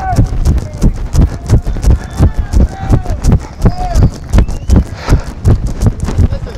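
A voice talking in short bursts over a fast, irregular run of dull thumps.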